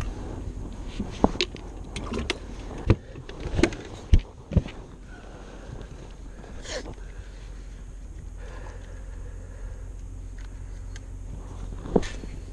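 Handling noise on a bass boat deck: several sharp knocks and clatters in the first five seconds, then a steady low rumble for the rest.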